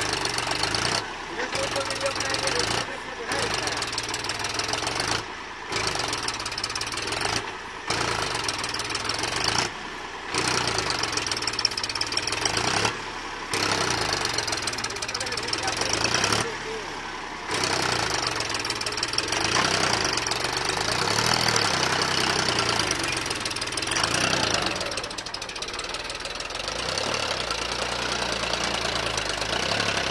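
Powertrac 434 DS tractor's three-cylinder diesel engine labouring under load as it pulls a heavily loaded sand trailer through soft sand. The sound dips briefly every couple of seconds in the first half, then runs more evenly.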